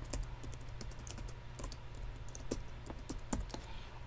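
Typing on a computer keyboard: an irregular run of quick key clicks, over a low steady hum.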